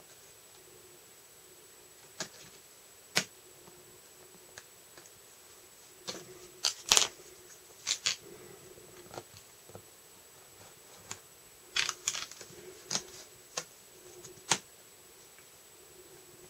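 Scattered light clicks, taps and short scrapes as a blade is worked along a plastic ruler on card and a cutting mat, widening a cut slot in the card; the sounds come in irregular clusters against quiet room tone.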